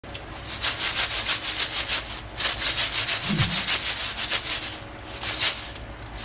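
Fried french fries tossed and shaken in a stainless steel mesh strainer: a rapid rhythmic scraping rustle, about five shakes a second, in three runs with short pauses between them.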